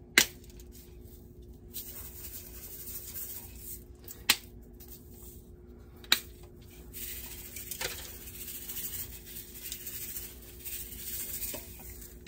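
Sprinkles being shaken into a stainless steel pot of thick fudge mixture: a faint rattling and rubbing, broken by four sharp clicks of a utensil or container against the pot.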